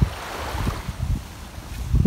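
Wind buffeting the phone's microphone as a low rumble, over the steady wash of small waves on a sandy shore, with a few soft low thumps.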